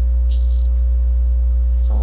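Loud steady low electrical hum, with a fainter steady higher tone above it. A brief soft hiss comes about a third of a second in.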